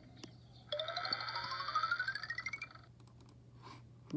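Cartoon sound effect played through a screen's speaker: a whistle-like tone rises steadily for about two seconds over a warbling held chord, then cuts off suddenly.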